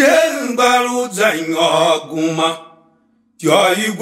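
A chanted song line sung with held, gliding notes. The singing fades out about two and a half seconds in, and after a brief silence the next phrase begins near the end.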